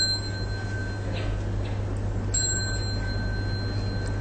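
A small Buddhist ritual bell is struck twice, the second stroke a little over two seconds after the first. Each stroke rings on with a clear, high, steady tone. It signals the assembly's bow to the Buddha image.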